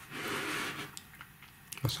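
A brief soft rustle of a hand on the fabric watch pillow in its box, then a few faint light clicks as the stainless-steel watch bracelet is handled.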